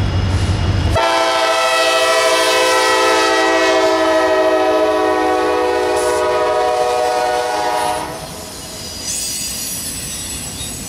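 Horn of a CSX EMD SD70MAC locomotive leading a freight train. It sounds one long chord of several notes, begins about a second in, is held for about seven seconds and cuts off suddenly. Before the horn the diesel locomotives rumble low as they pass, and near the end steel wheels squeal on the rails under the container cars.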